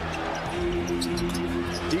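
Arena sound during live basketball play: held notes of arena music over a steady background, with a few short sharp hits of a basketball bouncing on the hardwood court.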